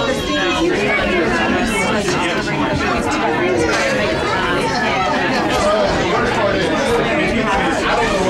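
Several people talking at once in a room: steady, overlapping conversation with no single clear voice.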